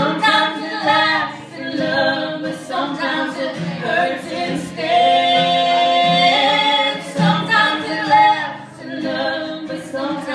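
A woman singing a slow ballad, holding one long note about halfway through.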